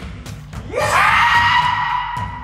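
A kendoka's kiai: a loud shout that rises in pitch about two-thirds of a second in and is then held as one long cry. It sits over background music with a steady beat.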